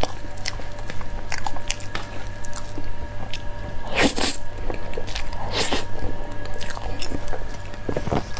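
Close-miked mouth sounds of eating soft, creamy durian mille crêpe cake: wet chewing with many small clicks. A louder, wet bite comes about four seconds in, and another a little before six seconds.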